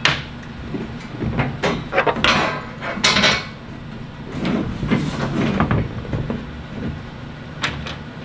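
Steel bolts, washers and nuts clinking and knocking against a powder-coated steel MOLLE panel as they are handled and set into its holes, a run of irregular clicks and knocks.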